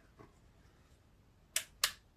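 Small switch on a battery-powered LED spotlight being flicked, two sharp clicks about a third of a second apart near the end, as the switch wiring is tested.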